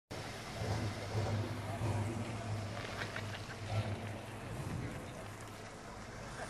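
Ford LTD Crown Victoria rolling slowly by, a low rumble that swells and eases several times over the first few seconds.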